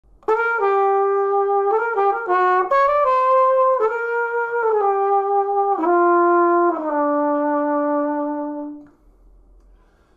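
Schilke 1040 flugelhorn playing a short melodic riff, its sound coloured by the kitchen's room acoustics. The phrase ends on a long held lower note that fades out about nine seconds in.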